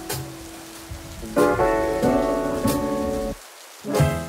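Steady rain falling, under background music of held chords that breaks off briefly near the end.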